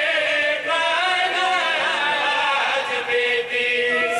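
Several men chanting a devotional recitation together into a microphone, one continuous melodic vocal line that bends up and down without a break.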